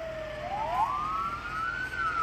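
Fire engine siren wailing in a slow cycle. Its pitch falls to its lowest about half a second in, rises for a little over a second, and begins to fall again at the end.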